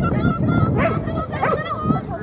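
Excited dogs yelping and barking in high, wavering cries, with a few sharper barks in the middle.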